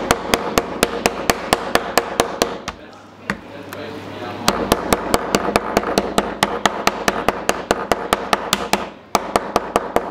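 Toothed metal chokka hammer pounding a thick piece of squid on a cutting board in fast, even strikes, about four a second, with a brief pause near the end. The strikes are softening the flesh until it is paper thin for use as bait.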